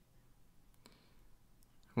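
A few faint clicks, typical of a computer mouse being clicked to move through a video, over near-silent room tone; a man starts speaking at the very end.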